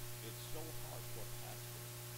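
Steady low electrical mains hum, with faint speech over it from just after the start until about a second and a half in.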